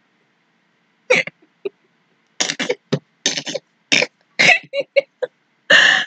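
A woman laughing helplessly in short, breathless bursts and gasps after about a second of silence, breaking into loud laughter near the end.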